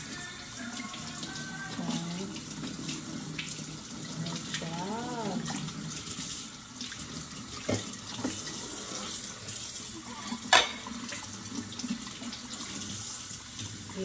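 Kitchen faucet running steadily onto a plate being rinsed in a stainless steel sink, with one sharp knock about ten and a half seconds in.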